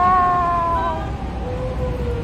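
High-pitched voices calling out a long, drawn-out goodbye, the pitch sliding slowly down over about a second.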